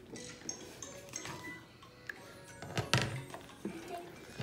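Knife cutting oranges on a wooden cutting board, with light clinks and a sharp knock about three seconds in, over faint background music.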